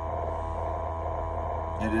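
Steady low hum with a fainter, steady higher tone above it, unchanging throughout.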